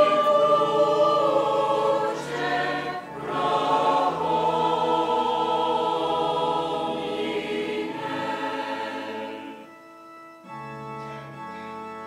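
A mixed choir of men's and women's voices singing slow held chords, with sustained organ-like keyboard chords and low bass notes underneath. About ten seconds in, the voices stop and the keyboard carries on alone with quieter held chords.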